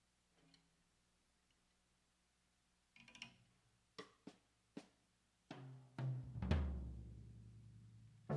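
Electronic music starting: after about three seconds of near silence, a few sharp synthesized drum hits, then a swell into a deep electronic boom whose low bass tone slowly fades.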